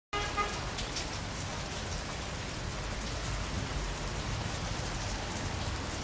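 Rain falling, a steady hiss with scattered drops and a low rumble beneath, as the opening sound effect of a recorded song. A short pitched tone sounds at the very start.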